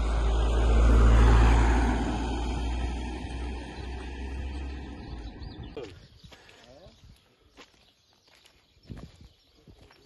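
A vehicle passing by on the road, loudest about a second in and fading away by about six seconds, with a deep rumble and a falling whoosh as it goes by.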